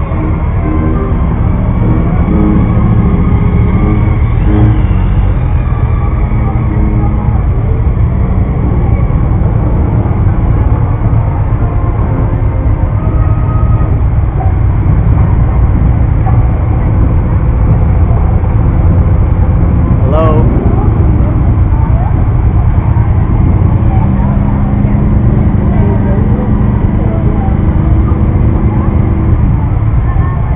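Motorcycle engines running steadily close by, a deep continuous rumble, with voices and music from the street mixed in.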